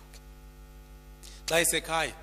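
Steady electrical mains hum from the microphone and speaker system during a pause in speech, then a man's voice through the microphone breaking in loudly near the end.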